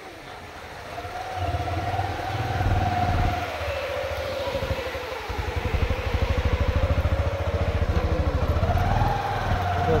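An engine running with a fast, even low pulsing, under one long wavering tone that dips in pitch and rises again near the end.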